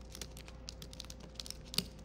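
Computer keyboard typing: a quick run of keystrokes, with one louder key hit near the end.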